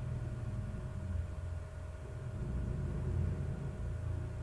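Low, uneven background rumble with a faint steady hum.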